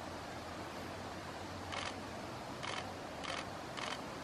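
A camera shutter clicking four times in the second half, at uneven intervals, over a steady low background hum.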